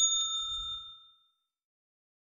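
Notification-bell 'ding' sound effect that rings out and fades away over about a second, with a faint click shortly after it starts.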